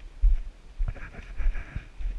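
Walking through forest undergrowth: uneven low thumps of footsteps and a handheld camera being jostled. A brief rapid rattling comes about a second in.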